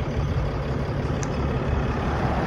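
The 2014 Ram 3500 dually's Cummins 6.7-litre inline-six turbo diesel idling with a steady low rumble.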